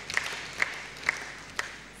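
Audience applause in a large hall dying away, with a few single claps standing out about twice a second.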